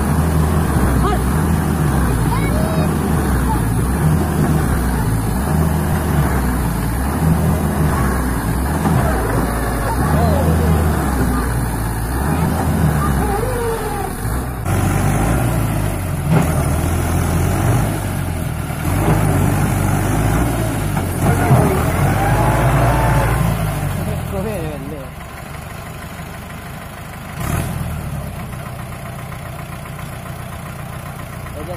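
Mahindra tractor's diesel engine labouring as it pulls a loaded trolley through loose sand, its rumble rising and falling with the effort, then easing off and quieter for the last few seconds.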